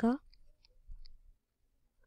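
A spoken syllable ending, then a few faint, short clicks within the first second.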